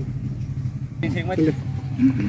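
A voice speaking a few words about a second in, over a steady low hum.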